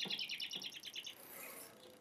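A small bird's trill: a fast run of high, even chirps, about a dozen a second, that stops about a second in.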